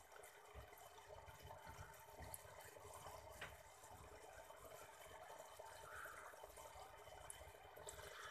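Aquarium filter running faintly, with a steady low trickle of water.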